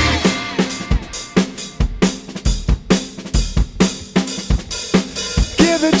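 Drum break in a band recording: the drum kit plays a groove of kick, snare and hi-hat on its own, with the guitars and vocals dropped out. The band and a voice come back in near the end.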